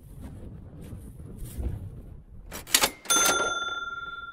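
A sharp mouse click followed a moment later by a bright bell ding that rings on and slowly fades: the sound effect of a YouTube subscribe-button animation.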